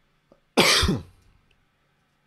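A man clears his throat with a single short cough about half a second in.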